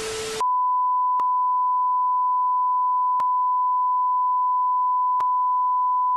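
Television static hiss with a low hum cuts off about half a second in, giving way to a steady, unbroken test-card tone (the beep that goes with colour bars), with three faint ticks two seconds apart.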